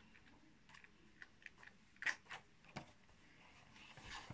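Faint rustles and soft flicks of a paper magazine's pages being flipped through, a handful of light ticks scattered through, the clearest about two seconds in.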